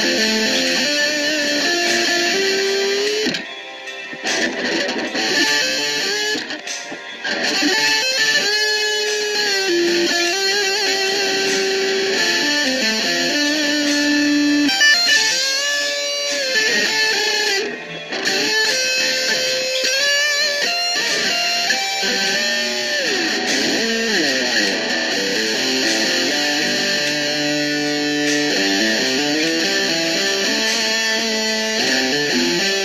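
Home-built Les Paul Junior-style electric guitar being played: single notes and chords held and changed, some sliding in pitch near the end. The level dips briefly a few seconds in and again just past halfway.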